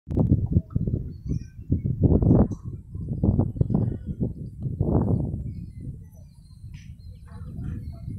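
Birds chirping against a loud, uneven low rumble that surges and dips, easing off after about six seconds.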